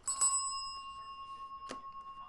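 A small bell struck once, ringing on and slowly fading. A short click comes near the end.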